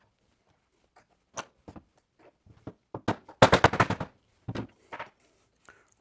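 A metal punch working the negative bullet pin out of a plastic EC5 connector housing on a wooden block: scattered sharp clicks and taps, with a quick rattling run of clicks about three and a half seconds in.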